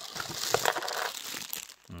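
A clear plastic bag of small metal cable clips and pulleys crinkling as it is handled and lifted out of a cardboard box, with a few sharp clicks along the way.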